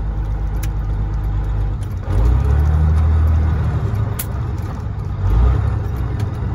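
Caterpillar 3406E inline-six diesel of a Freightliner FLD120 running under way, heard from inside the cab. About two seconds in the engine note grows louder and fuller for a couple of seconds, then swells briefly once more near the end.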